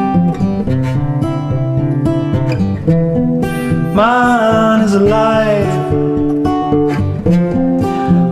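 Acoustic guitar playing a passage between sung lines, its notes held and changing in steps. About halfway through, a man's voice comes in with a long sung note that bends in pitch for about two seconds.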